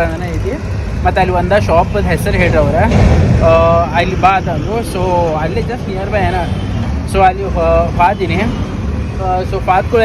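A man talking, over the low rumble of road traffic passing close by, including a truck and motorcycles; the traffic rumble swells about three seconds in.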